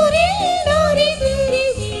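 A song playing: a single wavering, ornamented melody line sung over instrumental accompaniment with a steady bass.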